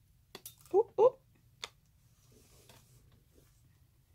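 A few sharp clicks of long acrylic fingernails against a plastic press-on nail tip, broken by two short vocal yelps about a second in as the tip nearly slips from her fingers.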